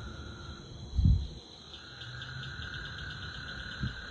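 Crickets chirping in quick, even pulses alongside a steady insect drone. A low bump sounds about a second in.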